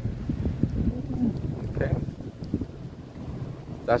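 Low, uneven rumble of a car moving off slowly, heard from inside the cabin, with wind buffeting the microphone.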